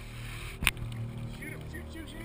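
Lake water and wind at a camera held at the water surface: a low steady rumble, with a single sharp knock about two-thirds of a second in and faint distant voices near the end.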